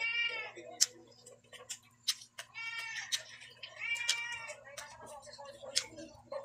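A cat meowing three times, short rising-and-falling calls at the start, about three seconds in and about four seconds in. Between them come sharp little clicks of lip-smacking and chewing.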